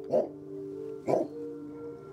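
Guard dog barking twice, about a second apart, over a low sustained music drone.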